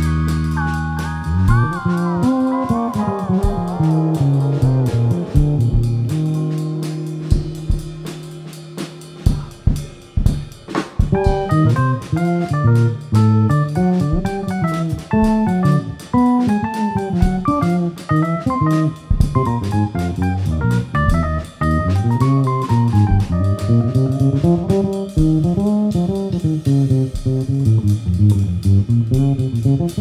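A trio of drum kit, electric keyboard and electric bass playing an instrumental. A held chord over a sustained bass note fades away over the first several seconds, then the drums come back in with a busy run of fast-moving notes for the rest.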